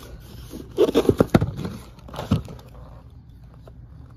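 Corrugated cardboard shipping box being handled and scraped, with a cluster of sharp knocks and scrapes about a second in, another just past the middle, then softer rustling.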